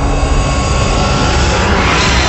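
Cinematic logo-reveal sound effect: a deep, steady rumble under a rushing whoosh that swells and grows brighter toward the end, like a jet roaring past.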